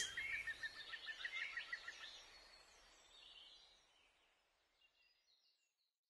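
Faint bird chirping: a quick run of short high chirps for about two seconds, then fainter, higher calls that fade out about four seconds in.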